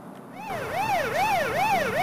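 Police car siren in yelp mode: a rapid rising-and-falling wail, about three sweeps a second, starting a moment in and growing louder.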